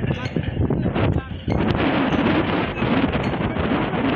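Outdoor voices of several men talking and calling, mixed with wind buffeting the microphone.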